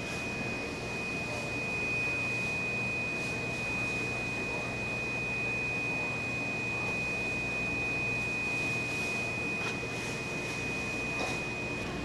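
A steady high-pitched electronic tone, held without a break, over a low machine hum.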